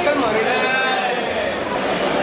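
A person speaking continuously, in the manner of a news voice-over.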